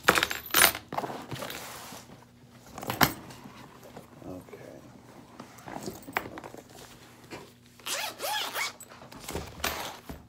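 Handling noise as a bunch of truck keys and other items are picked up and moved about on a desk: irregular bursts of jangling and rustling, loudest in the first second, with a sharp click about three seconds in.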